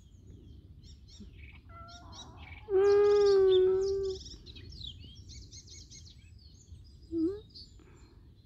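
Small birds chirping and twittering throughout, with a cat's loud, long, level meow about three seconds in and a short rising mew near the end.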